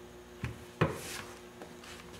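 Two light knocks and a brief rustle as a heat iron and a hand work shrinking fabric tape around the edge of a fabric-covered aircraft panel.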